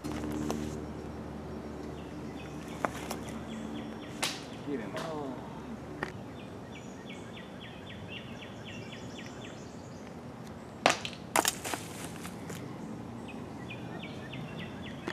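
Songbirds trilling repeatedly in woodland, with a few scattered sharp knocks. About eleven seconds in, a quick cluster of loud sharp hits as a disc golf disc strikes the chains of a metal basket.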